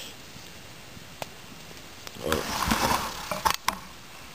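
Close handling noise: a short burst of rustling a little after two seconds in, then a few sharp clicks just before the end.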